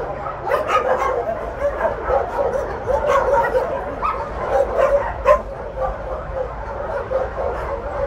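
Many dogs barking and yipping at once, an overlapping chorus of short calls that goes on without a break, with a person laughing at the start.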